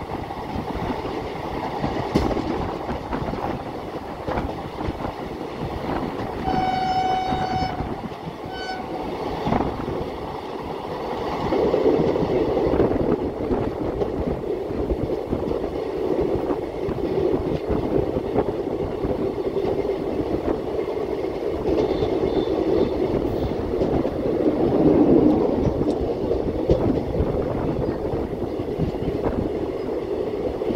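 Moving passenger train heard from its open doorway: continuous rumble and clatter of wheels on rails. A train horn sounds once, about a second and a half long, around seven seconds in, with a short second toot just after. The running noise grows louder a little later.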